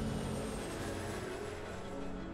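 Twin-engine jet airliner passing low overhead: a steady engine rush with a faint high whine that falls slowly in pitch as it goes by.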